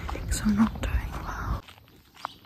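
A woman's soft, whispery voice over a low wind rumble on the microphone, with one short hum about half a second in; it all cuts off suddenly about one and a half seconds in, leaving faint clicks.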